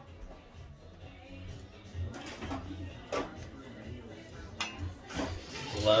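Plates and cutlery clinking at a table, with a few sharp knocks of china being set down, over background music. Voices come up near the end.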